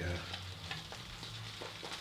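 Thäter shaving brush being worked round a bowl to build lather: a steady wet hiss with small crackles.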